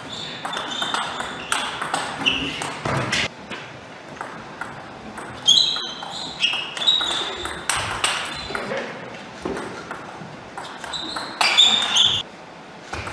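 Table tennis rallies: the ball clicking in quick exchanges off bats and table, with short high squeaks of players' shoes on the court floor. The hitting stops twice for a lull of a couple of seconds between points, and a new rally starts near the end.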